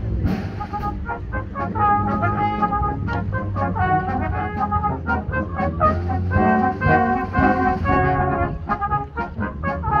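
Brass band playing a march outdoors: sustained brass chords and melody over a steady bass line, with regular drum strokes.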